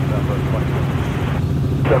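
Steady low drone of a Robinson R44 Raven II helicopter in flight, its Lycoming IO-540 engine and rotors heard from inside the cabin, under air traffic control radio speech. The radio goes quiet briefly near the end, leaving only the drone.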